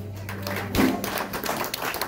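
The last chord of the song, on electric and acoustic guitars, rings out and is damped with a thump about three quarters of a second in. Scattered clapping from a small audience follows.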